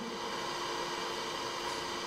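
Steady hiss with a faint steady hum from a microphone and amplifier sound system, its background noise heard while no one speaks into it.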